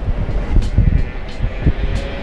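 Loud low rumble of outdoor background noise with irregular dull thumps, over faint background music.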